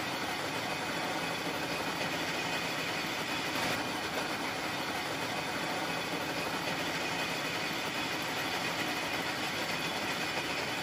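Cotton mill spinning machinery running, a steady dense mechanical whirr and rattle with no change in pace.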